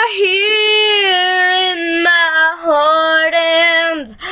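A young girl singing unaccompanied, holding long vowel notes that step down in pitch, each a little lower than the last, with a short break before the final note.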